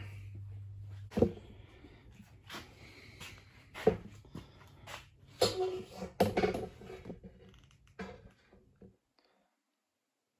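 A low steady hum for about the first second, then scattered sharp knocks and clatters of handling, with a brief pitched sound in the middle; the sound cuts out entirely about a second before the end.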